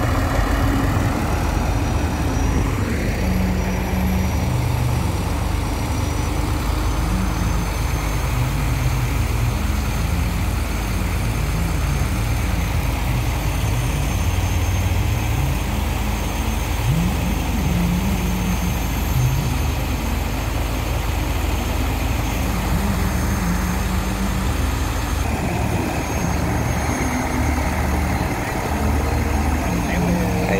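Heavy diesel engine of a sand-pumping barge running steadily under load.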